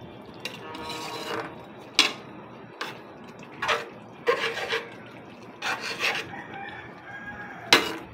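A spatula stirring and scraping through a pan of simmering sponge gourd and misua noodle soup, with sharp knocks against the metal pan, the loudest about two seconds in and near the end.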